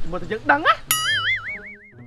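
A comic 'boing' sound effect: a sudden twang about a second in, then a springy tone that wobbles up and down in pitch as it fades away.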